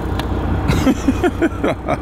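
Semi-truck's diesel engine running with a steady low rumble, heard from inside the cab as the rig reverses a trailer toward a loading dock. Brief wordless vocal sounds from the driver come partway through.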